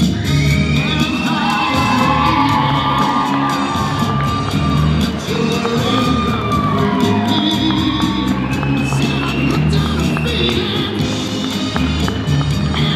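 Recorded song playing steadily for a couple's first dance, with guests whooping and cheering over the music.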